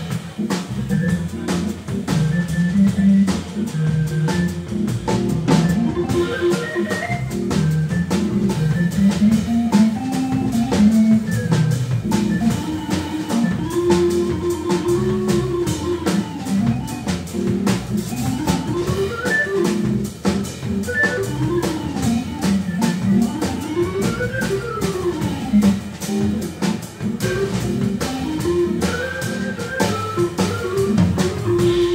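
A jazz quartet playing live: drum kit with cymbals, upright double bass and keyboard. A lead line runs up and down in quick rising and falling phrases, most clearly in the second half.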